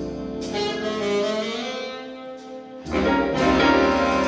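Live big band playing jazz: saxophones sustaining notes over brass and drums, with cymbal strikes. About three seconds in the full ensemble comes in noticeably louder.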